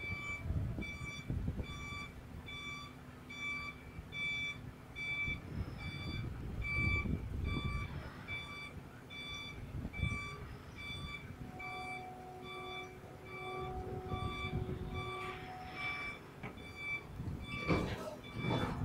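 Electronic warning beeper of heavy lifting and transport machinery sounding a steady series of short beeps, about one and a half a second, over a low engine rumble; a steady whine joins in for a few seconds past the middle.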